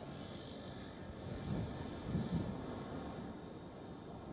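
Faint city street traffic noise under a steady hiss, with a low rumble from a passing vehicle a little past halfway.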